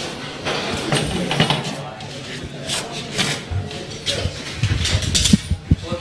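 Voices of several people talking at once, untranscribed chatter, with a few short knocks and clicks in the second half.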